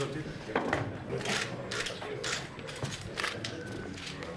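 Several short, crisp rustles of sheets of paper as documents are signed and pages turned, over a low murmur of voices in a room.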